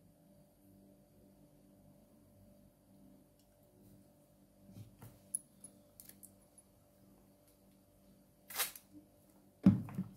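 Desk handling noises over a low steady hum: a few small clicks about halfway through, then a brief scrape and a sharp knock near the end.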